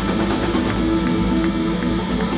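Live rock band playing through the club PA, with amplified electric guitar notes held over drums.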